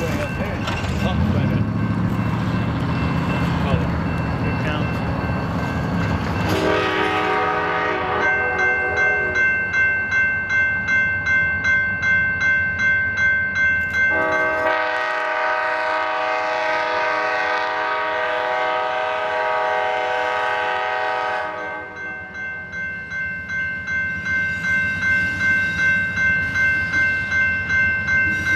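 Low rumble at first. A bell then starts about six or seven seconds in, ringing in steady strokes a little over a half-second apart. From about fifteen seconds an Amtrak GE P42 diesel locomotive's horn sounds one long chord over the bell for about seven seconds as the train approaches.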